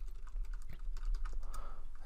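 Computer keyboard typing: a quick, uneven run of keystrokes as a file name is entered.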